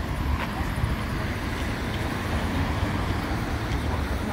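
Steady street noise: wind buffeting the microphone, with road traffic in the background.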